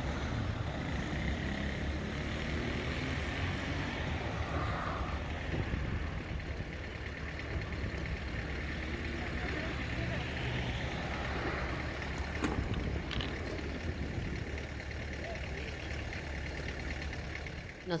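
Steady low rumble of background noise with a few faint clicks about twelve and thirteen seconds in.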